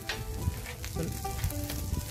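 Food sizzling on a flat steel griddle, where masa tlacoyos and chopped meat are frying.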